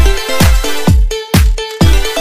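Background electronic dance music, with a heavy kick drum on every beat, about two beats a second, under sustained synth notes.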